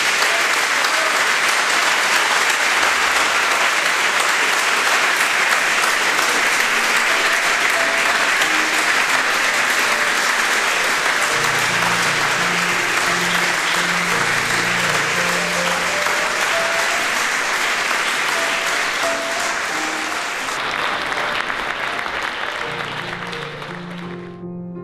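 Large concert audience applauding steadily, a dense clapping that thins and fades toward the end.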